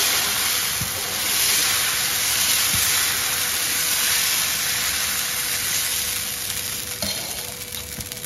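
Dosa batter sizzling on a hot, newly seasoned cast iron dosa tawa while a steel ladle spreads it round in circles; the sizzle eases off about seven seconds in.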